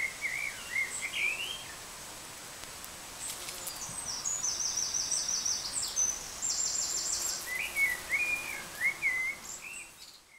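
Birds singing over a steady background hiss. There are warbling chirps at the start and again near the end, and rapid, high trilled phrases in the middle.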